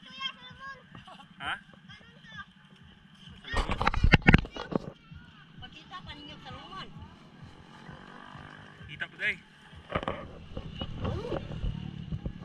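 Background voices of people talking, with no clear words. A loud rush of noise lasts about a second, about four seconds in.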